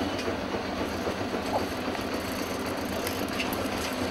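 Bicycle being ridden along a concrete path: a steady rolling noise with a light continuous rattle from the frame and wire basket.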